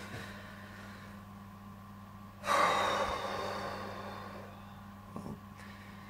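A man's loud sigh, a long breath out about two and a half seconds in that fades over a second or so, over a steady low hum.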